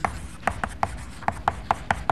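Chalk writing on a blackboard: a run of short taps and scratches, about four a second.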